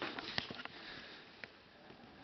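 A few faint, short clicks in the first second and one more about halfway through, over quiet room hiss.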